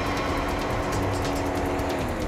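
A car's engine running as it drives in up a driveway, under background music with long held notes.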